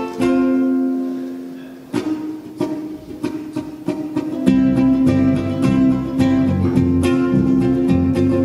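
Ukulele playing a plucked song intro, with a chord left to ring out near the start; an electric bass guitar comes in underneath about four and a half seconds in.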